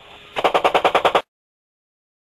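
A short burst of rapid automatic gunfire, about a dozen evenly spaced shots a second for under a second, fired on the call to fire from a gun-camera crew. It cuts off suddenly.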